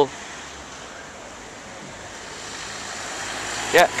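Night-time city street ambience: a steady hiss of traffic noise that grows gradually louder through the second half, as a car comes along the road. A man's voice starts just before the end.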